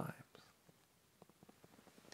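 Near silence: room tone with a few faint soft clicks.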